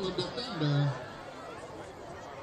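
A man's voice talking for about a second, then quieter crowd chatter.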